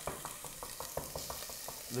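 Diced onion sizzling steadily in a saucepan on the hob. Over it come quick, irregular taps of a chef's knife chopping on a wooden board, about six or seven a second.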